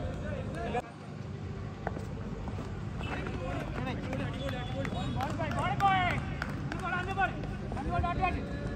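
Several men's voices calling out and talking at a distance across an open cricket ground, over a steady low background hum. The sound dips briefly about a second in.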